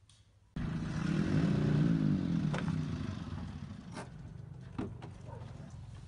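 A pickup truck's engine running, its pitch rising and then falling in the first couple of seconds, with a few short sharp clicks and knocks over it.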